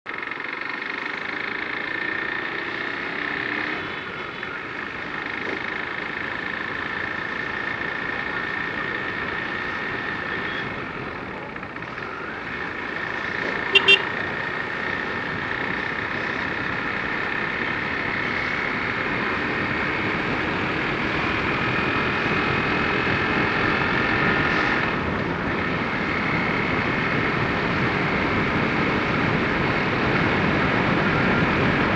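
Motorcycle engine running at road speed under the rush of wind, its pitch drifting up and down with the throttle. A horn beeps twice in quick succession about halfway through.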